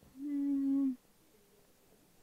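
A person humming a single steady, level-pitched "mmm" for just under a second, near the start.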